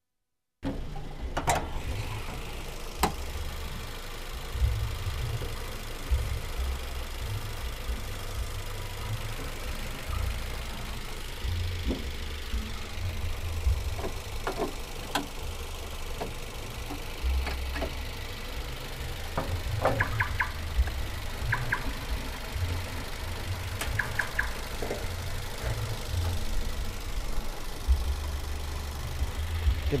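A Toyota Rush's four-cylinder VVT-i petrol engine idling steadily, with scattered light clicks and knocks.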